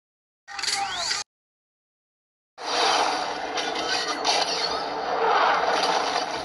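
Two dubbed-in sound effects separated by dead silence. The first is a short clip with rising whistling sweeps about half a second in. The second is a longer dense, noisy effect that starts about two and a half seconds in and runs steadily until just past the end.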